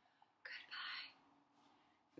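A woman whispering a soft, breathy "goodbye" about half a second in, the quiet answer to a goodbye rhyme.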